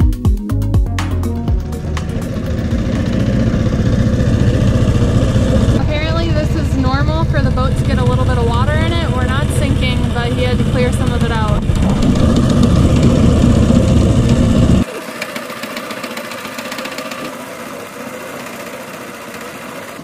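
Small engine of a wooden fishing boat running steadily under way, with a woman's voice over it for a few seconds in the middle. About three-quarters through, the engine sound drops away abruptly to a much quieter, steady hum.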